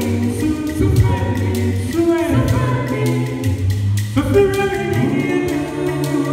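A small mixed a cappella group singing a gospel song in harmony through microphones, a bass voice holding low notes under the upper parts, with a steady ticking beat running through it.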